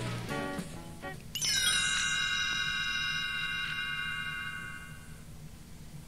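A single chime tone, the read-along cassette's signal to turn the page, starting suddenly about a second and a half in and slowly fading away over about four seconds. Before it, the end of the previous musical passage dies away.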